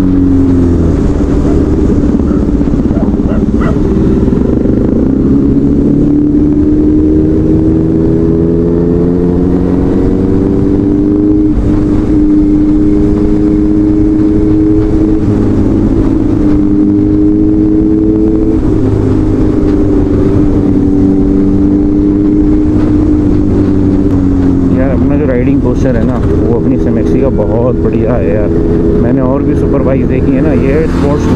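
Honda CBR650F's inline-four engine running on the move at steady cruising revs. Its pitch slowly rises and falls with the throttle, with a few short dips that mark gear changes.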